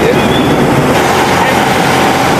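Car driving along a city street, heard from inside the cabin: steady engine and road noise, with a steady whine joining about a second in.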